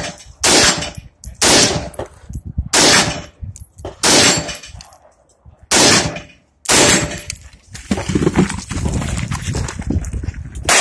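AR-style rifle fired shot by shot, about six shots at uneven spacing of roughly one to one and a half seconds, each trailing off in an echo; after the last shot a steadier stretch of noise follows.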